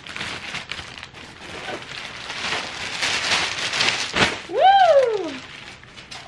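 Plastic mailer and clear plastic product bags rustling and crinkling as a package is opened and its contents pulled out. About four and a half seconds in, a short vocal exclamation rises and then falls in pitch.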